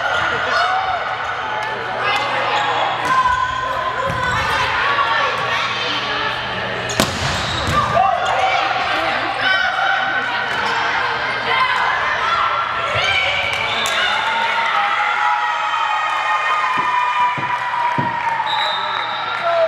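A volleyball rally on a hardwood gym floor: the ball is struck several times, with sharp knocks about three, four, seven and seventeen seconds in, and sneakers squeak under spectators' voices and shouting that echo in the hall.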